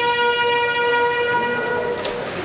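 Bugle call sounded for military honors: one long held high note, full and brassy, that cuts off right at the end.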